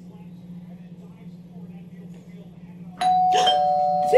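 Two-tone doorbell chime (ding-dong) sounding about three seconds in, a higher note then a lower one, both ringing on, over a low steady hum.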